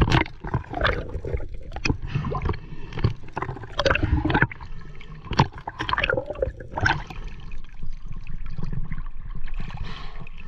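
Underwater sound of a freediver swimming close over a coral reef, picked up through a waterproof camera housing: gurgling bubbles and water movement come in irregular bursts over a low rumble.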